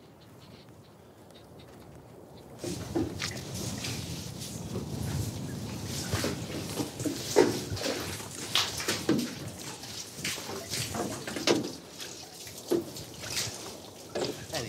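Water being hauled up from a well by hand: a plastic jerrycan on a rope, with water splashing and sloshing and many short knocks and scrapes, starting about two and a half seconds in.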